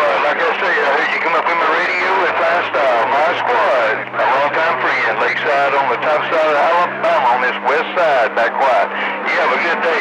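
Garbled men's voices heard through a CB radio receiver, with talk running over one another, and a steady low hum underneath.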